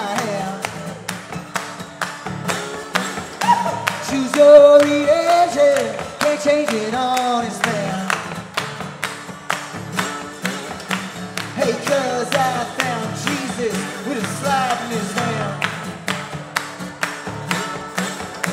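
Live acoustic band music: acoustic guitar and a sung melody over a steady percussion beat of about three strokes a second.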